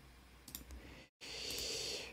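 A few faint computer mouse clicks about half a second in, then a soft steady hiss in the second half.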